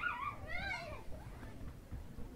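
A domestic animal's soft, high whining call: a brief wavering note, then a longer one that rises and falls in pitch about half a second in.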